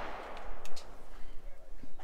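Outdoor shooting-range ambience with a faint, sharp gunshot crack about two-thirds of a second in.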